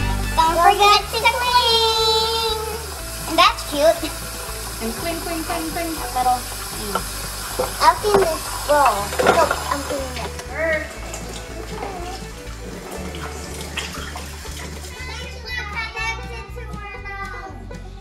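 Background music with a steady bass beat, with children's high-pitched voices coming and going over it.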